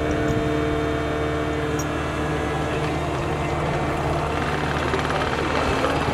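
Compact track loader's diesel engine running steadily close by, the machine driving off on its tracks later on.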